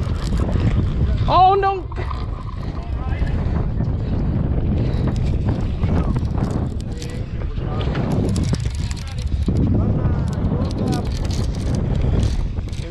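Wind buffeting the microphone on an open boat at sea, a steady low rumble, with one excited shout about a second and a half in.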